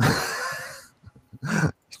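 A man's breathy laugh into a close microphone: one burst of breath at the start that fades within about a second, followed by a short spoken word near the end.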